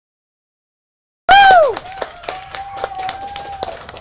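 Hands clapping, starting suddenly about a second in with a loud whoop that rises and falls in pitch, then a steady held high note over the applause.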